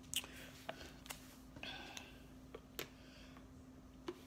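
Quiet mouth sounds of drinking from a water bottle: scattered small clicks of sips and swallows, with a soft breathy exhale a little after halfway.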